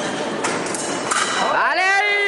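A fencer's drawn-out yell, rising then falling in pitch, starting about one and a half seconds in, over hall noise and knocks from the bout.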